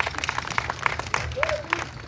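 Crowd applauding, with many scattered hand claps and a few voices calling out.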